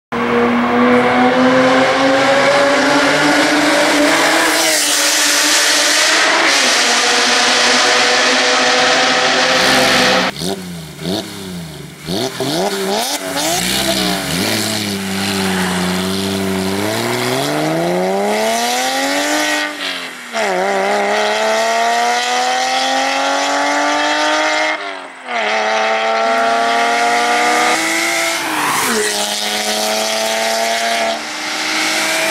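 Porsche 996 flat-six running through an iPE Innotech aftermarket exhaust, revving hard under acceleration. Its pitch climbs, then drops sharply before climbing again, several times over, like up-shifts.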